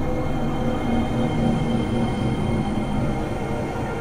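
Generative ambient electronic music made with Koan Pro: many sustained, steady tones held over a dense low rumbling layer, with no beat.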